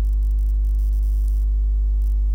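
Steady electrical mains hum: a loud, unchanging low buzz with a ladder of higher overtones above it and faint hiss.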